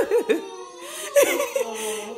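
A toddler and an adult laughing and giggling together.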